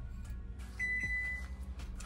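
Oven's preheat alert: one steady high beep lasting about half a second, a little under a second in, signalling that the oven has reached temperature. Soft background music runs underneath.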